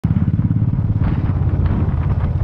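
Motorcycle engine running steadily while the bike is ridden at low speed, a fast, even low pulsing beat, heard from the rider's seat.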